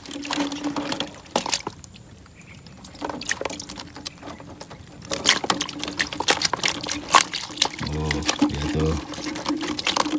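Water pouring and dripping off a lifted wire-mesh fish trap, with the mesh rattling and clicking as it is handled and shaken out over a net basket; quieter for a few seconds, then busy with sharp clicks from about halfway through.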